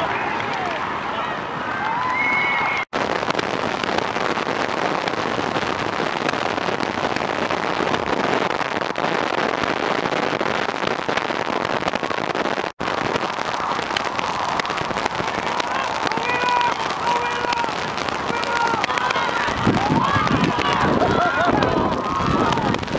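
Wind buffeting the microphone, with shouts and calls from young rugby players and touchline spectators near the start and again through the last several seconds. The sound breaks off twice very briefly, about three and thirteen seconds in.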